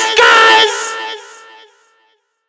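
End of a rap song: a high sung vocal note over the beat. The beat drops out about two-thirds of a second in, and the voice then fades away with an echoing tail.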